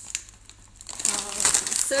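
Crinkling of a plastic Doritos chip bag being handled, starting about a second in.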